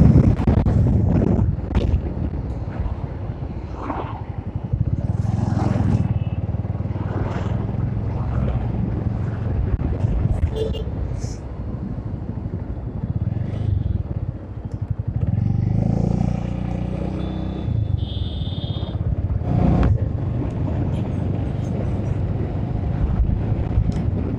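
Bajaj Avenger motorcycle's single-cylinder engine running as it rides along a town road. Its note rises briefly about two-thirds of the way through.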